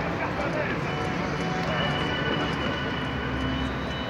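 Indistinct voices of players and people courtside calling and talking, over a steady low rumble of outdoor background noise.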